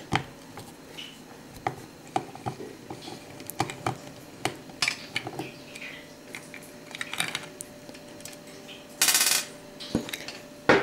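Scattered clicks and light metallic knocks as a Kawasaki ZZR600 carburettor bank and its small parts are handled, with a louder rattle lasting about half a second near the end.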